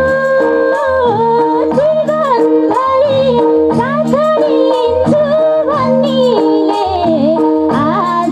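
A woman sings a Nepali folk (dohori) song into a microphone with a bending, ornamented melody, over held harmonium chords and a repeating low rhythmic accompaniment.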